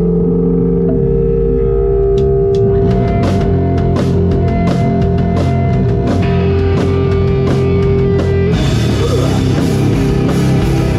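Death metal band playing live: distorted electric guitar and bass hold long notes, drum and cymbal hits come in about two to three seconds in, and the whole band crashes in together near the end.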